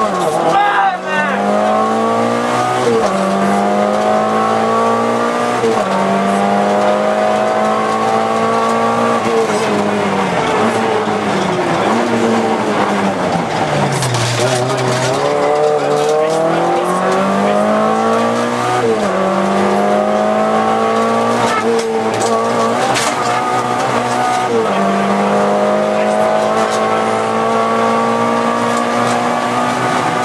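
In-cabin sound of a Volkswagen Golf II GTI 16V rally car's 16-valve four-cylinder engine revving hard through the gears. Its pitch climbs and drops back at each upshift. About halfway the revs fall away as the car slows, then it accelerates and climbs through the gears again.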